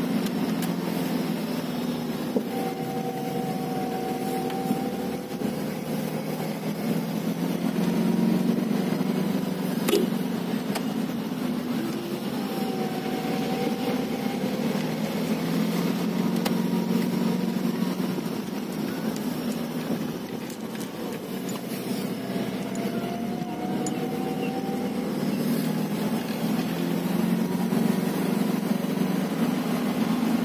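A car's engine and drivetrain running steadily while driving, heard from inside the cabin as a low drone. A fainter, higher whine swells and fades three times.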